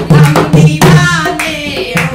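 Women singing a Hindu devotional bhajan together, with steady rhythmic hand-clapping and a dholak drum keeping the beat.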